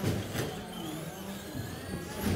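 Electric RC short-course trucks (Traxxas Slash) racing: motor whine rising and falling as they accelerate and brake, with sharp knocks near the start and about half a second in.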